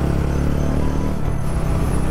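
TVS Ronin's single-cylinder engine running steadily at road speed under a little throttle, with wind and road rush over the bike.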